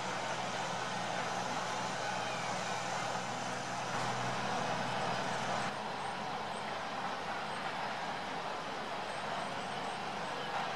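Steady outdoor background noise, a hiss with a faint low hum under it. The noise shifts abruptly a little past halfway, where the low hum drops away.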